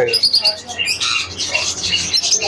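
A flock of caged lovebirds chattering: many short, high chirps overlapping one another.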